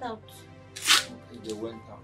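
Film background music with steady held tones, under brief fragments of a voice. A short, loud hiss cuts in just before the middle.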